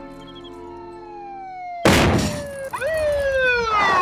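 A cartoon police-car siren sound effect wails, rising sharply and then falling away, over a sudden loud rush of noise that starts about halfway in. Before that, a single held tone slides slowly downward.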